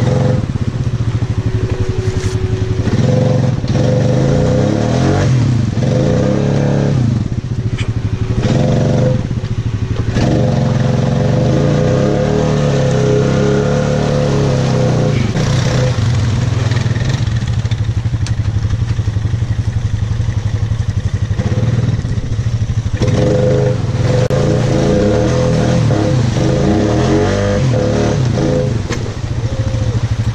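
ATV engine running under load through mud, its pitch rising and falling again and again as the throttle is worked.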